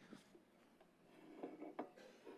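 Near silence: room tone, with a few faint, short sounds about one and a half seconds in.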